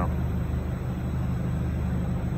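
Heated tunnel running: a steady low hum with an even hiss of moving air over it.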